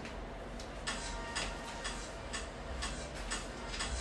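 Quiet background music with a light ticking beat, about two to three ticks a second.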